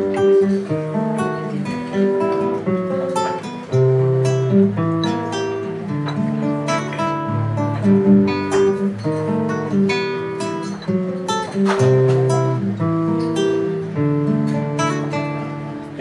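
Solo acoustic guitar playing a song's instrumental introduction: a steady run of plucked notes over a moving bass line.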